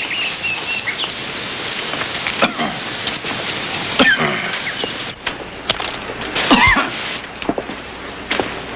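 Birds calling over a steady hiss: a few short high chirps near the start, a falling call about four seconds in, and a longer curving call near the end, with a few scattered clicks.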